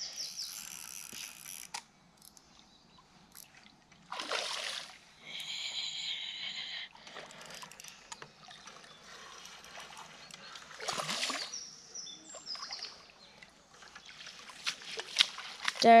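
Hooked barbel splashing at the river surface as it is played in to the landing net, heard as separate splashes a few seconds apart and a busier flurry near the end as it is netted.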